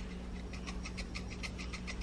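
Seasoning shaker shaken over a pot of chili, a quick run of light ticks, about ten a second, as the dried herbs are sprinkled out.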